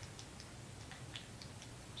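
Faint, irregular small clicks and ticks of a dropper cap being unscrewed from a frosted glass beard-oil bottle.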